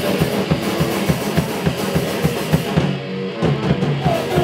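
Hardcore punk band playing live: a fast drum-kit beat under distorted electric guitar and bass, loud and dense. The music thins briefly about three seconds in before the full band comes back.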